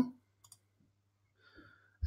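Near silence broken by a faint click about half a second in and another faint click near the end: computer mouse clicks.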